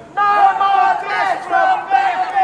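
A voice shouting a protest chant through a handheld megaphone, the sound thin and horn-like, in drawn-out calls that hold a note and then drop in pitch.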